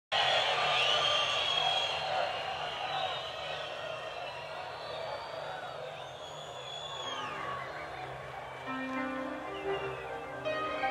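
Large concert crowd cheering, with whistles and whoops rising above the noise. About seven seconds in, an instrument begins playing held notes as music starts.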